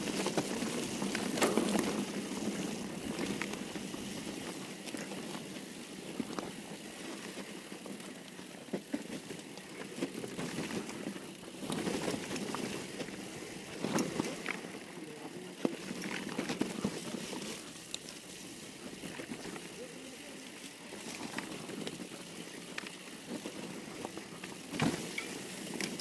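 Mountain bike rolling down a dirt trail: tyre noise over the ground with the bike rattling and clicking over bumps.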